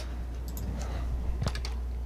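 A few light computer clicks, one louder about one and a half seconds in, as the lecture slide is advanced, over a steady low hum.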